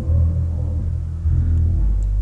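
Emerson Designer ceiling fan with a K55-type motor running on low speed: a steady low hum.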